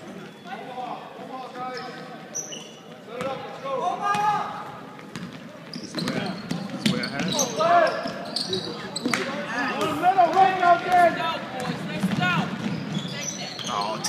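Basketball bouncing on a gym's hardwood court during play, with voices of players and spectators calling out over it, louder from about six seconds in.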